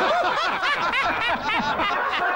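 Laughter: quick, repeated chuckles with rising and falling pitch.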